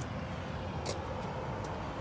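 Low, steady wind rumble on the microphone, with a faint click a little under a second in.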